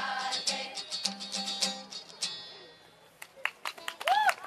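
Children's choir singing a Romanian Christmas carol (colind) to strummed acoustic guitar; the last sung note ends about two seconds in and the chord fades away. A few sharp claps begin near the end as applause starts.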